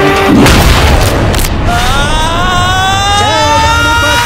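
A loud whooshing boom sound effect about half a second in, then dramatic background music whose held notes slowly rise in pitch.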